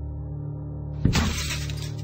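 A sudden shattering crash about halfway through, its bright crackling trail dying away over the next second and a half, over steady sustained background music.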